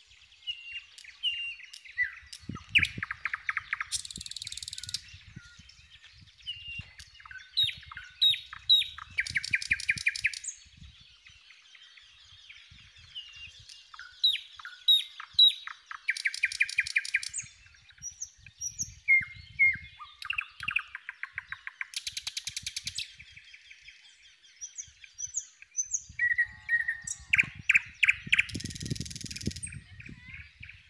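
Several small birds chirping and calling, short whistled notes and sliding chirps, with a loud rapid trill every few seconds. Faint low thumps come and go underneath.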